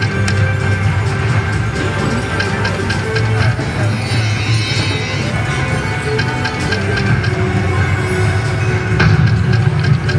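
Ainsworth Ultimate Incan Firestorm slot machine playing its game music and sound effects as the reels spin round after round.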